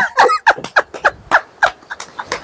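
A man and a woman laughing heartily: a run of short ha-ha pulses, about three a second, that trails off.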